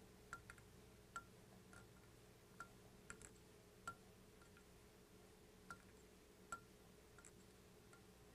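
Near silence: a faint steady hum with about a dozen faint, irregular ticks, the handling noise of peacock herl being wrapped along a hook shank held in a fly-tying vise.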